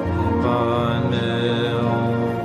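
Buddhist mantra chanting: several voices hold long, steady low notes, with a slight wavering ornament here and there.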